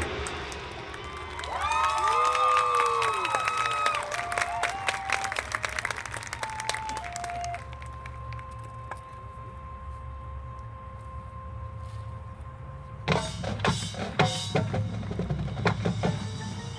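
Marching band playing its field show: swelling notes that bend up and fall away over dense drum hits in the first few seconds, then a short run of single notes. A quiet held tone lasts about five seconds before a burst of loud drum and percussion hits near the end.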